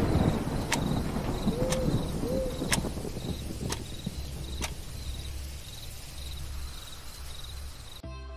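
Night-time horror sound effects: an owl hoots twice about two seconds in over chirping crickets, with a faint tick about once a second and a low rumble, all fading out.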